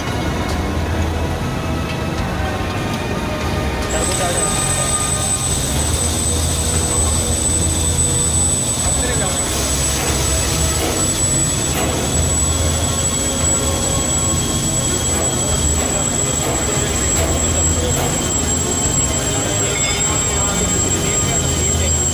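Steady factory-floor machinery noise with a low hum and indistinct voices. A thin, high-pitched whine starts abruptly about four seconds in and holds steady.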